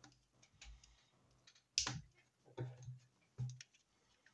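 Light plastic clicks and scrapes from handling and prying open the small plastic case of a SinoTrack ST-901 GPS tracker, with scattered clicks and the loudest about two seconds in.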